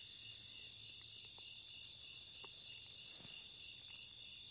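Near silence, with the faint, steady high chirring of crickets throughout and a few faint ticks.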